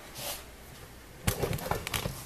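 Light handling noise: a quick cluster of soft clicks and rustles starting a little past halfway, over a faint hiss.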